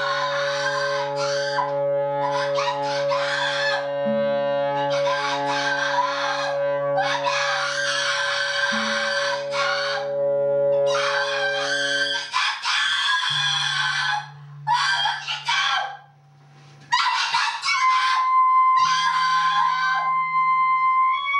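Harsh, shrieking vocal screams into a microphone in repeated bursts of a second or two, over steady low drone tones that stop about two-thirds of the way in. After a brief drop near 16 seconds the screams resume, joined near the end by a thin high sustained tone.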